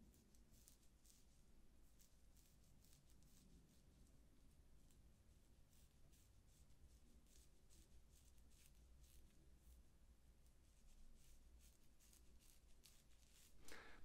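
Very faint, irregular scratchy strokes of a Bevel disposable safety razor dragging through long, lathered scalp hair, close to near silence.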